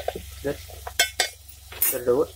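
Steel spoon stirring and scraping a frying onion-and-spice masala in a stainless steel pot, with about four short, sharp scrapes against the metal, two of them about a second in and one more near the end.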